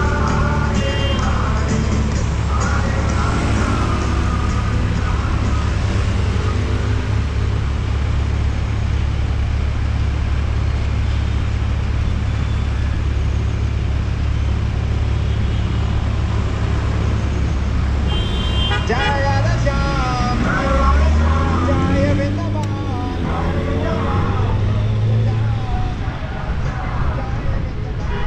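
City street traffic at an intersection: a steady low engine hum from idling vehicles. In the last several seconds, engines rise in pitch as traffic pulls away, mixed with voices.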